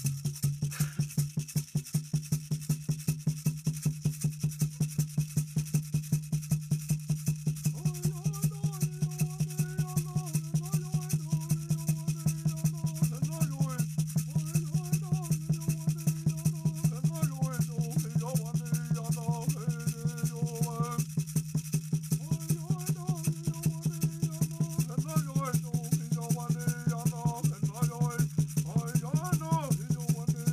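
A hand rattle shaken in a steady beat, about three shakes a second, with a man's voice joining from about eight seconds in to sing a chant over it. A steady low hum runs underneath.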